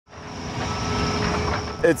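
Large SANY SY500H tracked excavator running, a steady engine-and-hydraulics noise that fades in over the first half second.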